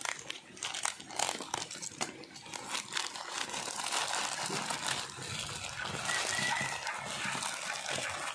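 Thin plastic courier pouch crinkling and rustling as it is cut open with a utility knife and pulled apart by hand, with scattered sharp crackles of the plastic.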